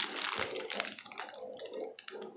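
Plastic lollipop bags crinkling as they are handled, a run of small irregular crackles.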